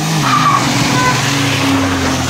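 Maruti Suzuki Wagon R hatchback driving hard close past, its engine running under load beneath a loud, steady hiss of tyre noise.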